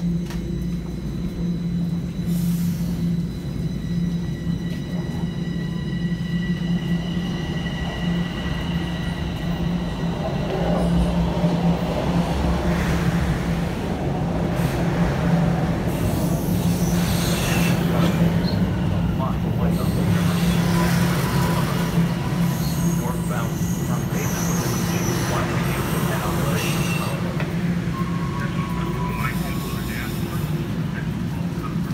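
Toronto subway train at the station, a steady electrical hum running under everything, with a thin high whine during the first ten seconds. A crowd of passengers talks and shuffles as they board and pack into the car, louder from about ten seconds in.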